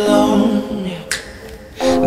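Background pop song with a female singing voice: a held sung note dies away, a sharp snap-like click comes about a second in, and the singing starts again near the end.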